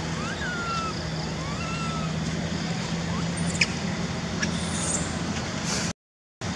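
Steady outdoor background noise with a low hum under it; a few short chirping calls rise and fall in the first two seconds, and two faint clicks come later. The sound cuts off suddenly at the very end.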